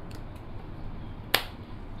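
A single sharp click about a second and a third in, from an alloy folding bicycle pedal being handled on the crank, with a couple of faint ticks just before it over a steady low room noise.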